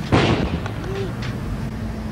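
A single loud, sudden bang or heavy thump, dying away over about half a second and followed by a couple of fainter knocks, over a low rumble of city traffic.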